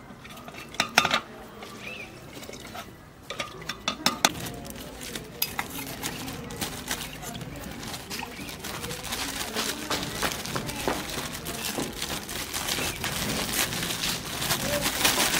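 Steel kitchen utensils clinking and scraping: a metal ladle stirring in a steel pot, with a few sharp clinks in the first few seconds. In the second half the handling gets denser, with steel dishes clattering and a plastic bag rustling.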